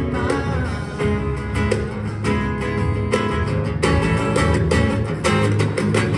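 Live acoustic-set music: two acoustic guitars strummed and picked in a steady rhythm, with band accompaniment underneath.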